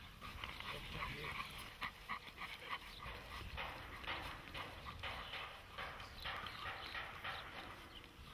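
Dog barking repeatedly, a quick run of short barks, then longer ones from about three and a half seconds in.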